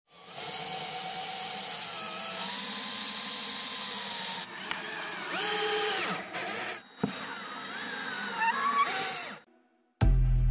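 Power drill boring into an MDF subwoofer box panel, its motor whine shifting pitch several times as speed and load change. There is a sharp knock about seven seconds in, and the drill stops just before the end.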